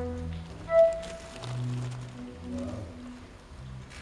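A live school band playing a slow, sparse passage on electronic keyboards: a few long held low notes under several held higher notes, the loudest about a second in, dying away near the end.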